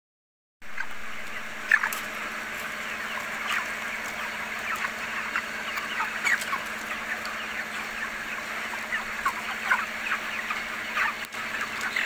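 A flock of white broiler chickens calling together: many short, high, downward-sliding peeps and clucks overlapping without a break, over a steady low hum.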